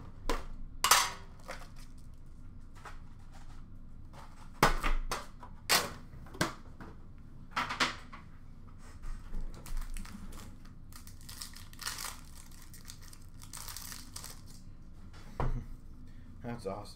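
Trading card packs and their cardboard box handled and opened by hand: wrapper crinkling and tearing, with scattered sharp clicks and taps of cardboard and packs on the counter. The crinkling thickens in the later part.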